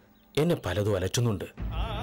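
A man's voice says a short line with a wavering pitch, then background music comes in near the end: sustained tones with vibrato over a low drone.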